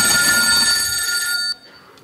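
Telephone ringing: one steady ring that cuts off about one and a half seconds in.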